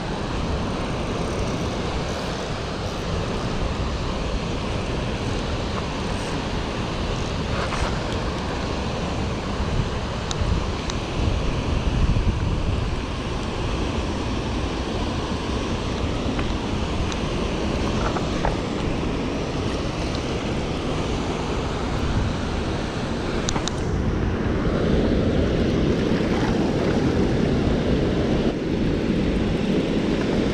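Steady rush of white water pouring out of a hydro canal spillway's gates, with wind on the microphone. The water grows fuller and louder in the last few seconds.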